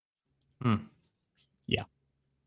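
A man's short "hmm" about half a second in and another brief vocal sound near the end, with a few faint clicks in between.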